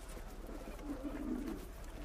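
A bird cooing faintly in the background, one low call in the middle.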